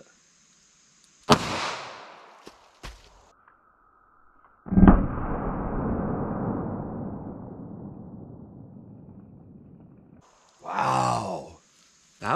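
A single revolver shot from a Ruger LCR in .32 H&R Magnum about a second in, dying away over about a second. A few seconds later a second, louder sudden bang followed by a long deep rumble that fades out over about five seconds: the shot and the watermelon bursting played back slowed down. A short vocal exclamation near the end.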